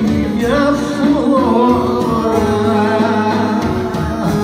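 Live Greek folk band: a singer's ornamented melody with clarinet and steady accompaniment.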